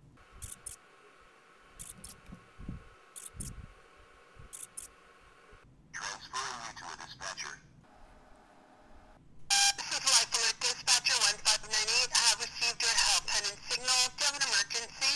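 Life Alert LTE pendant's built-in speaker on a call still waiting to be answered: a faint steady tone with a few clicks, then a short stretch of voice about six seconds in. From about nine and a half seconds a louder voice talks through the pendant's speaker as the call is picked up.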